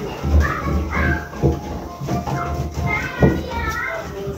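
A small child's high voice babbling and calling over a steady low hum.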